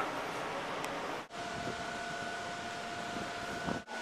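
Steady wind and engine noise on the deck of a ferry, with a steady hum in the middle stretch. The sound drops out suddenly twice, about a second in and again near the end.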